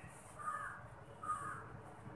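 Two faint bird calls, short and harsh, a little under a second apart, over quiet room tone.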